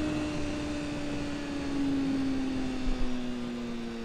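Honda CBR600F4i's inline-four engine heard onboard, holding a steady note that sinks slowly in pitch as the bike slows, under a constant rush of wind noise.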